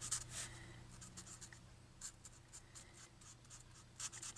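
Faint scratching of a Stampin' Blends alcohol marker tip on thick white cardstock, in many short strokes as the folds of a stamped ribbon are coloured in for shading.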